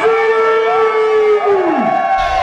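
One long, loud held note that stays steady for about a second and a half, then slides steeply down in pitch near the end.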